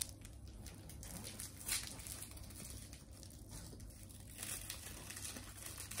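Crinkling and tearing of a sweet's wrapper as it is opened by hand, in faint, irregular bursts.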